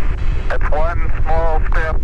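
A deep, steady rumble, with a voice speaking over it from about half a second in.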